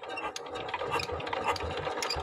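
Single-cylinder diesel engine of a walking power tiller being hand-cranked, turning over with a fast, irregular mechanical clatter that starts abruptly.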